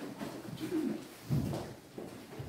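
Chairs scraping and creaking on the floor and feet shuffling as a row of seated people stand up, with a dull knock about one and a half seconds in.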